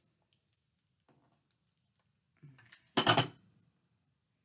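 Faint handling clicks of small craft items, then a short, louder clatter about three seconds in as the plastic liquid-glue bottle is put down on the cutting mat.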